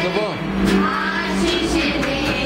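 Group singing of a Christian praise song led by a child, with a strummed acoustic guitar; a voice slides up and down in pitch briefly near the start.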